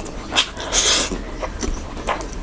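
Close-miked mouth sounds of a person eating rice and curry by hand: wet clicks and smacks of chewing, with a short hissing draw of air through the mouth a little under a second in.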